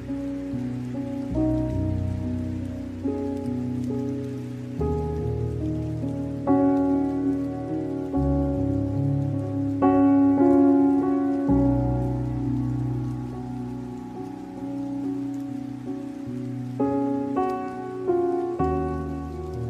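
Slow, gentle instrumental meditation music, with new notes and low bass notes entering every second or two, layered over a steady sound of rain.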